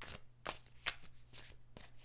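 A deck of tarot cards being shuffled by hand, with about five crisp snaps of cards against each other, roughly two a second.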